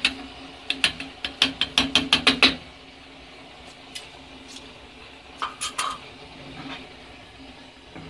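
Metal spoon clinking and tapping against a stainless-steel bowl while stirring chocolate melting with oil. There is a quick run of about ten taps in the first couple of seconds, then a few scattered clinks and a short burst of them later.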